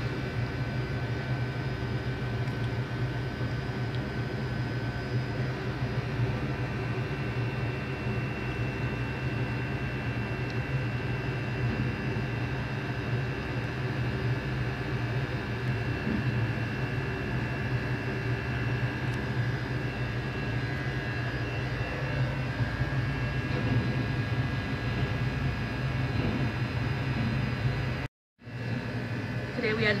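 Steady low mechanical hum with a few faint steady whining tones above it, like an engine or machinery running; the sound drops out for a moment near the end.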